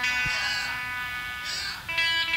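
Electric guitar holding a sustained, ringing note between songs at a live rock club show, its upper overtones wavering. A short low thump sounds about a quarter second in.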